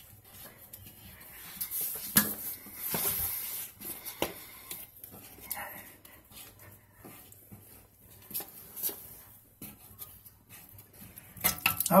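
Plastic coupling nut of a braided toilet supply line being unscrewed by hand from the tank's fill-valve shank: scattered small clicks and scrapes of plastic, with a louder cluster of clicks near the end as it comes loose.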